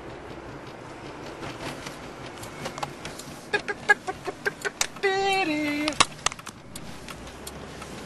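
Car cabin road noise while driving, then a run of clicks and knocks from the camera being handled and moved about. About five seconds in comes a brief tone that steps down in pitch.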